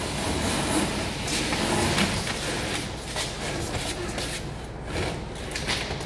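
Cardboard pieces being handled, slid and pressed together, giving irregular rustling and scraping with small knocks.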